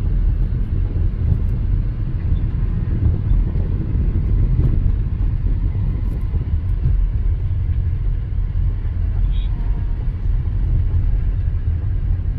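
Steady low rumble of a car moving along a road, heard from inside the vehicle.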